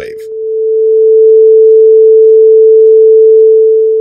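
A single pure 441 Hz sine-wave tone, steady in pitch and loud, swelling in over the first second and fading out near the end. Played alone, it does not beat.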